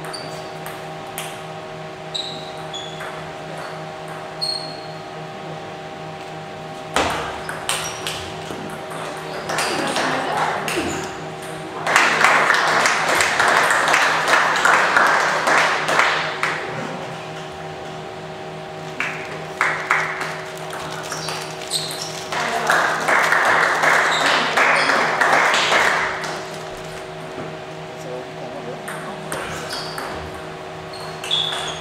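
Table tennis rally: the plastic ball ticking sharply off bats and table in a large hall, over a steady electrical hum. Twice, about twelve seconds in and again after twenty-two seconds, spectators break into applause for a few seconds.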